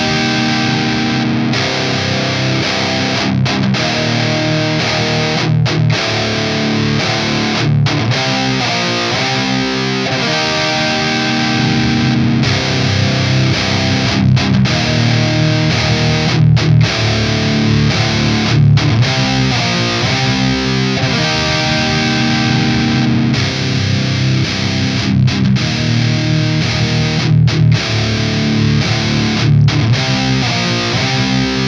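Heavy distorted electric guitar riff from an ESP guitar with an EMG 81 pickup, a looped part reamped through the Earforce Two amp head's overdrive channel into Mesa 4x12 cabinets, with the Tube Screamer switched off. The riff repeats with short stops every couple of seconds while the amp's tone knobs are being turned.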